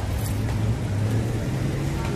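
A low, steady rumble with a few faint ticks above it.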